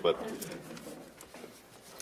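A short spoken word, then quiet room tone with faint, indistinct low sounds that fade toward near silence.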